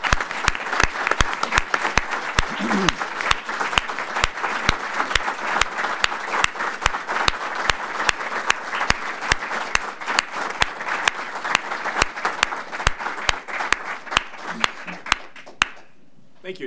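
Audience applauding steadily at the end of a speech, with sharp, evenly spaced claps from someone close by standing out above the crowd. The applause stops abruptly shortly before the end.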